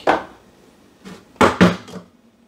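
A few short knocks and clatters of espresso gear being handled and set down: one at the start, a faint one about a second in, and the loudest two close together about a second and a half in.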